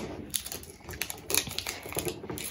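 Thin plastic wrapping being peeled and crinkled off a plastic surprise ball, with small irregular ticks and taps of fingers handling the ball.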